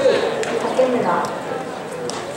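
Voices calling out in drawn-out calls, with a couple of short sharp clicks, one about half a second in and one near the end.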